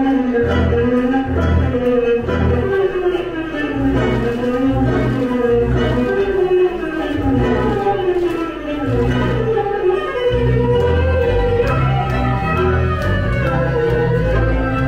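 Tango music: a bowed string melody sliding up and down over a steady, pulsing bass beat.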